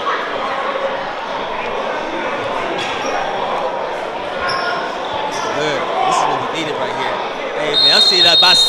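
Indoor basketball gym: a crowd chatters and murmurs in a large, echoing hall, with a basketball bouncing a few times on the hardwood court.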